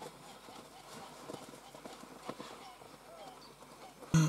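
Faint, irregular knocking of horse and zebu cattle hooves on the wooden planks of a bridge as the herd walks across.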